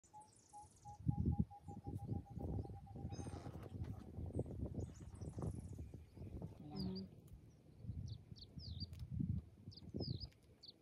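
Wild birds calling in the open bush: a run of short, evenly repeated pips in the first few seconds, then quick high chirps from about seven seconds on. Low rustling and thumping sounds run underneath through the first half.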